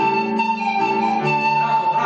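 An ensemble of pan flutes playing a melody together, accompanied by sustained chords on an electronic keyboard.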